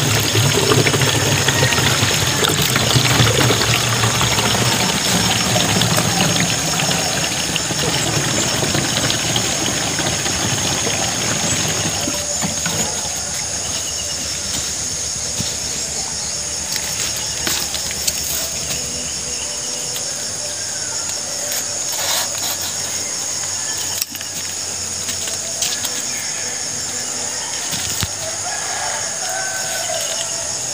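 Water pouring from a plastic jerrycan into a knapsack sprayer tank, a loud, steady gush for about the first twelve seconds that then stops. After that the background is quieter, with a steady high-pitched hum and a few sharp knocks of handling near the sprayer.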